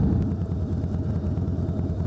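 Harley-Davidson Road King's air-cooled V-twin engine running at low revs, a steady low rumble of fast, even firing pulses.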